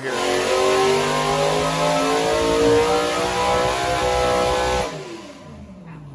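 Supercharged small-block V8 on an engine dyno, held at high revs under load, with the pitch creeping up and then sagging. About five seconds in the throttle comes off: the sound drops sharply and the revs fall away.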